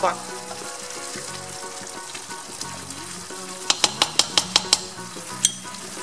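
Chopped vegetables sizzling and simmering in a frying pan over a gas flame as the last of the added water cooks off. In the second half comes a quick run of sharp knocks, the spatula striking the pan.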